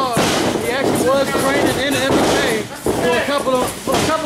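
Men's voices talking continuously, with words too indistinct for the recogniser, most likely ringside commentary. A thud at the very start, typical of a wrestler's body landing on the ring mat.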